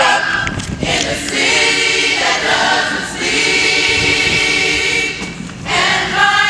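Gospel choir singing live, holding long sustained chords in several voices.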